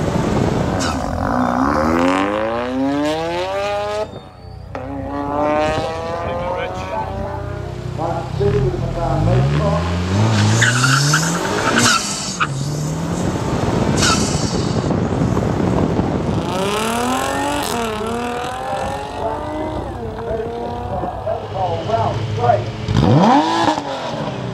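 Sports car engine heard from on board, accelerating hard through the gears: its pitch climbs steeply, then drops at each gear change, several times over.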